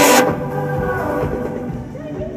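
Loud live pop music over a concert sound system, heard from the audience, stops abruptly about a quarter of a second in. Afterwards the hall is quieter, with a low rumble and faint scattered tones.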